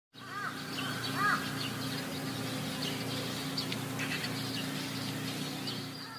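Jungle ambience of birds calling and chirping over a low steady hum. Two louder arching calls, each rising and falling, come in the first second and a half, and scattered short high chirps run on after them.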